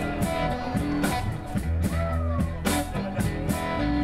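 Live blues band playing, led by an electric guitar, over a steady beat.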